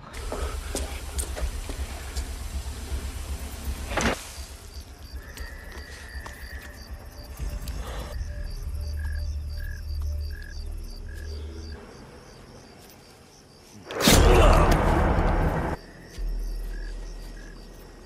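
Tense film score built on a pulsing low bass with faint high tones above it. Near the end comes a sudden, loud burst of noise lasting a little under two seconds, then a steady low tone.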